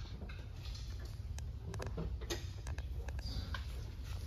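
Low steady background hum with a few faint, scattered clicks and ticks.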